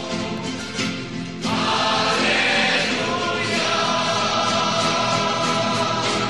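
Choral music: a choir singing long, held chords that swell louder and brighter about one and a half seconds in.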